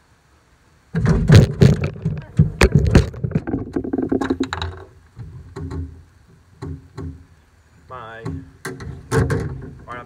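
A dog knocks over the filming camera onto the boat's deck: a sudden loud clatter of knocks and bangs about a second in, lasting a few seconds, then scattered lighter knocks and handling noise.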